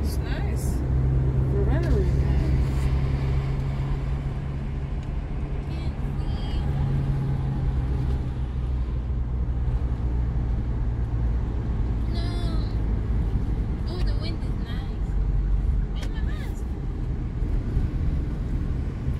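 Steady low hum of a car's engine and tyre noise, heard from inside the cabin of the moving car.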